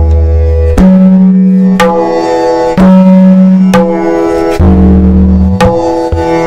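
A tabla played slowly, with open ringing strokes on the dayan (the treble drum) about once a second. The first and one of the last strokes are joined by a deep ringing bass stroke on the bayan.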